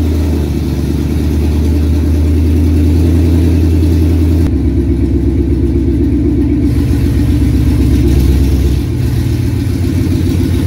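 A 2019 Ford Mustang GT's 5.0-litre DOHC V8 idling loud and deep through open longtube headers with no catalytic converters. Its low tone steps slightly about halfway through and again near the end.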